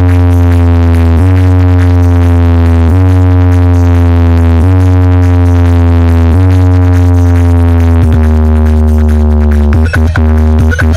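Electronic dance remix played very loud through a stacked sound-system speaker wall during a speaker check: a heavy sustained bass with held synth chords that change about every second and a half to two seconds, without drums.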